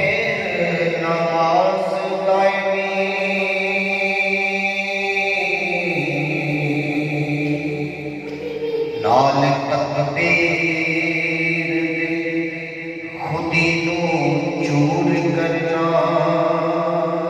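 A man singing a devotional Urdu kalam into a handheld microphone, in long held, gliding notes, pausing briefly twice for breath.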